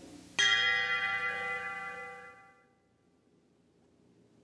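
A single struck bell note that sounds sharply about half a second in and rings out, fading away over about two seconds, as the closing note of a piece of soft music.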